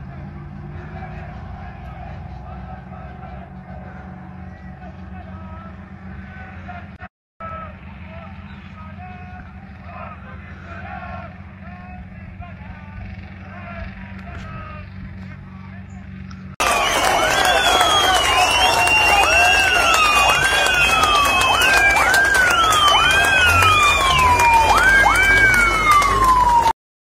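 A low steady rumble under faint voices, then, about two-thirds in, several emergency-vehicle sirens start suddenly and loudly, wailing in repeated rising-and-falling sweeps at different pitches that overlap one another.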